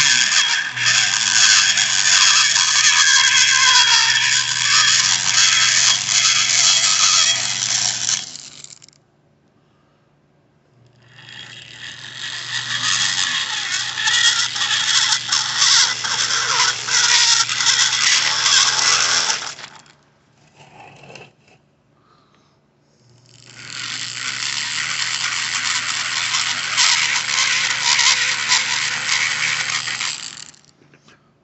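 Handheld rotary tool grinding the aluminium port of an F6A DOHC turbo cylinder head, its motor humming under the rasp of the bit. It runs three times, each for about eight seconds, stopping briefly in between.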